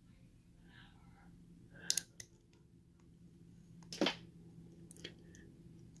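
A lock pick working the pin tumblers of a padlock during single-pin picking: soft scraping with a few faint ticks and two sharper clicks about two seconds apart.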